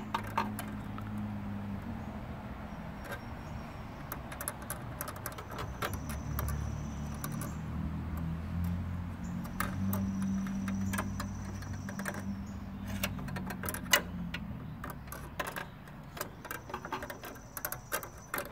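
Metal tool clicking and scraping against the terminals of a microwave oven's high-voltage capacitor and the steel chassis as the terminals are shorted. There is no snap of a discharge: the capacitor seems already discharged. A low steady hum runs underneath and swells in the middle.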